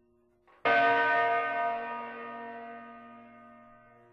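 A large bell struck once, about half a second in, ringing with many overtones and slowly fading away. It is tolling at roughly five-second intervals.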